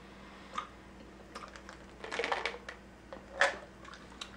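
A person chewing a mouthful of gummy vitamins: a few scattered short clicks from the mouth, the loudest about three and a half seconds in.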